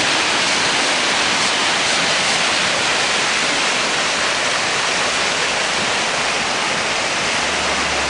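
Brook in flood rushing out through a stone bridge arch and down its channel: a steady, loud rush of fast water.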